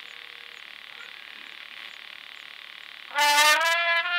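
Steady hiss of the live recording, then about three seconds in a trumpet comes in loudly with a held note that bends up slightly as it starts, distorted by clipping.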